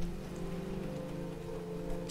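Steady rain-sound bed with soft background music holding sustained low notes underneath.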